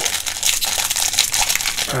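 Foil wrapper of a Pokémon Lost Origin booster pack crinkling steadily, a dense run of fine crackles, as hands grip it and work it open.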